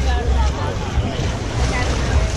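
Wind buffeting the camera microphone in uneven gusts, with voices of people nearby in the background.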